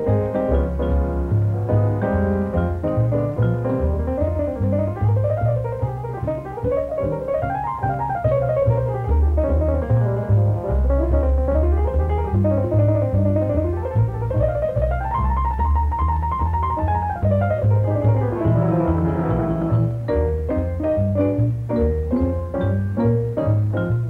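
Jazz piano playing quick runs of notes that climb and fall, over a line of low bass notes.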